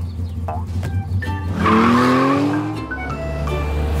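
Cartoon race-car sound effect: about a second and a half in, an engine revs up with a rising pitch along with a burst of hiss, over cheerful background music.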